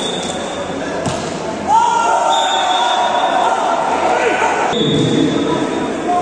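Spectators talking and calling out in a large sports hall, with a volleyball thudding once on the court floor about a second in. From about two seconds in, one long drawn-out shout rises over the chatter.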